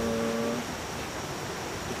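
A man's voice holds one drawn-out syllable of a spoken prayer for about half a second, then breaks off. After that comes a pause filled with steady rushing background noise.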